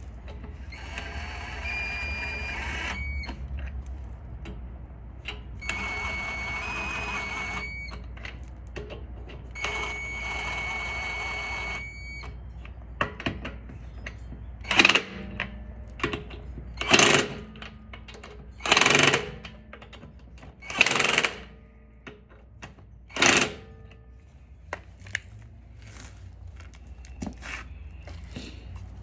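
20V cordless impact wrench running on a car's wheel lug nuts to loosen them: three runs of about two seconds each with a steady whine, then five short, louder bursts about two seconds apart.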